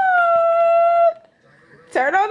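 A toddler's voice holding one long, high, steady note for about a second, with no words.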